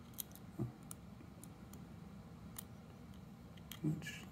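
Faint, scattered small clicks and ticks of a jeweler's Phillips-head screwdriver working a tiny screw out of a plastic drone landing-gear housing. There is a brief low sound about half a second in and another just before the end.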